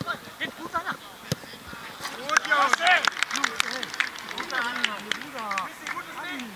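Several men shouting and calling out on a football pitch as a goal is scored, loudest about two to three seconds in, with scattered sharp knocks among the voices.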